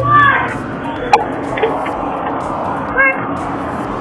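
Children's high-pitched voices calling out on a playground: a short call at the start and another brief one about three seconds in, over steady outdoor background noise, with a single sharp click just after a second in.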